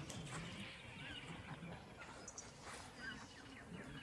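Quiet outdoor bush ambience with a few faint, short bird chirps scattered through it.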